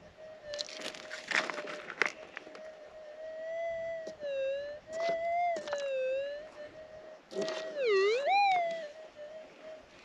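Minelab gold detector's steady threshold hum through headphone-monitored audio, swinging down and up in pitch twice, about four and eight seconds in, as a handful of dug soil is passed over the coil and it signals the nugget. Scraping and clinking of a pick or scoop in stony ground comes early on.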